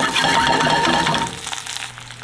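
Green onion and ginger sizzling in hot peanut oil in a stainless steel skillet. The sizzle is loud and crackling, then drops to a quieter level about a second and a half in.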